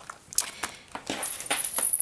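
A scrapbook album page being turned over: plastic page protectors and paper rustling, with several sharp clicks and light metallic knocks from the embellishments attached to the pages.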